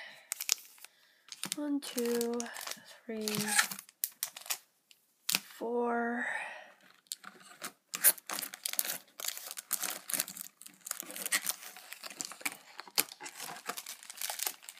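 Foil booster packs and box packaging crinkling and rustling as they are handled and lifted out, a dense crackle through the second half, with a few short spoken words early on.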